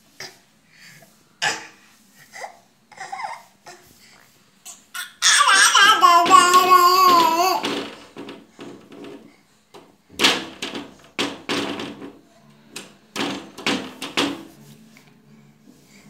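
A baby babbling and laughing in short bursts, with one long, loud, wavering squeal about five seconds in.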